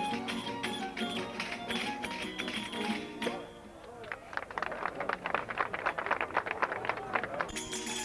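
Verdiales band music: violin and guitars over a tambourine's steady rhythm, breaking off about three seconds in. After a short lull comes a fast run of sharp clicks, about seven a second, and the full band starts up again near the end.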